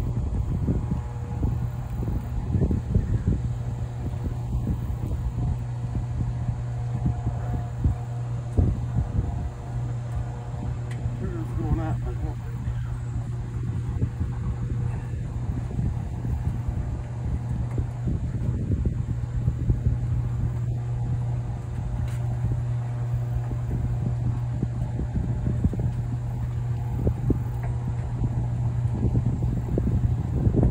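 Wind buffeting the microphone in uneven gusts over a steady low hum.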